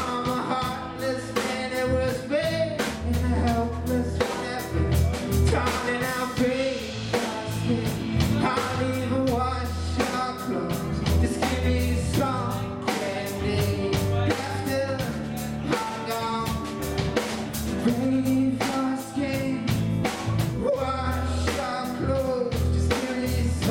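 Live rock band playing a song: drum kit, bass guitar and electric guitar through amplifiers, with a singer on the microphone.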